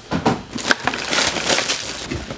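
Tissue paper crinkling and rustling as a sneaker is handled and unwrapped over its shoebox, with a sharp tap about two-thirds of a second in.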